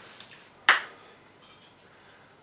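A single sharp click about two-thirds of a second in, with a couple of fainter ticks just before it.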